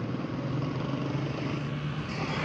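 A motor vehicle's engine running with a steady low hum, against the even noise of road traffic.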